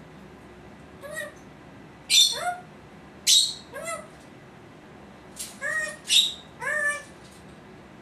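Congo African grey parrot giving a string of about eight short calls, several starting with a harsh rasp and then sliding up in pitch.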